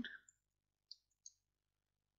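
Two faint computer mouse clicks, about a third of a second apart, in near silence.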